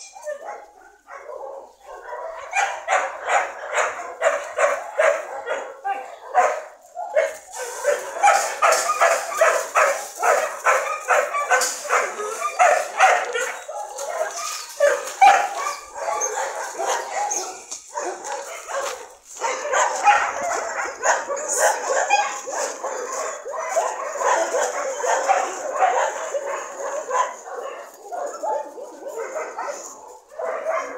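Several dogs barking and yipping at once, a dense run of overlapping barks that starts about two seconds in and grows thicker from about seven seconds on.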